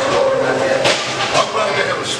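Steady mechanical running noise of a vortex tunnel's rotating drum, with voices over it.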